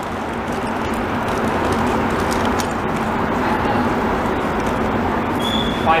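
Montreal metro MR-73 rubber-tyred train pulling out of the station, its running noise building gradually as it gathers speed. A brief high tone sounds near the end.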